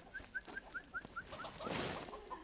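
A bird calling: a quick, even series of about nine short chirps, about five a second, dropping a little in pitch over the last few.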